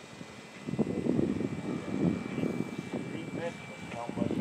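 Radio-control P-51 Mustang model's OS 95 engine flying overhead, a thin steady whine at a distance. Voices and a louder jumble of nearby noise sit over it from about one to two and a half seconds in.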